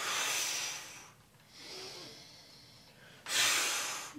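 A man breathing hard through a body-weight scapular shrug, his breaths paced to the reps: a long breath out, a fainter breath about halfway through, then a sudden loud breath out near the end as he squeezes his shoulder blades.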